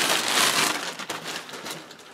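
Clear plastic bag crinkling and rustling as a rifle is slid out of it, loudest in the first second and fading away.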